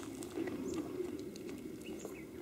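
Doves cooing, a low, repeated, swelling coo, with a few short high chirps from small birds.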